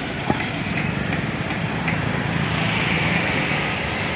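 Steady street traffic noise: motor engines running, a little louder in the second half, with one short click early on.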